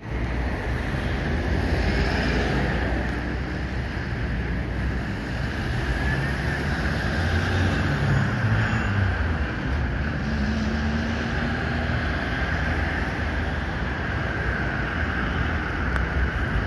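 City street traffic with wind buffeting the microphone: a loud, steady rush of passing cars over a heavy low rumble.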